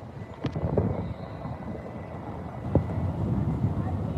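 Low rumbling background noise, with a few light clicks and taps: a handheld phone microphone picking up wind and handling noise.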